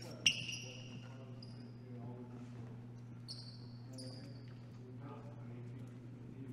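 Basketball sneakers squeaking on a gym court: several short high-pitched squeaks, the loudest right after a sharp knock about a quarter second in, with indistinct voices and a steady low hum underneath.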